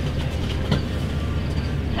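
Pickup truck engine idling: a steady low rumble, with one faint knock about three-quarters of a second in.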